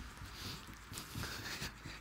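Faint sounds of people jogging on a wooden floor: soft, irregular footfalls and breathing.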